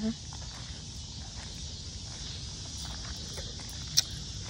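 Steady high-pitched chorus of cicadas, over a low rumble of wind on the microphone. A single sharp click right at the end.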